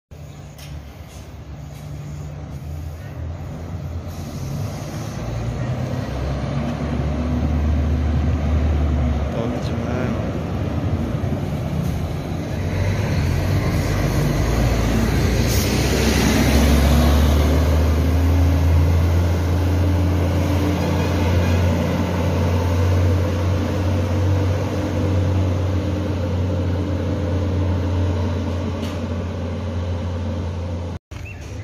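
Marcopolo Paradiso G6 double-decker coach's diesel engine drawing near, growing steadily louder, then passing close by about halfway through with a brief rush of noise. Afterwards the engine keeps up a steady low drone.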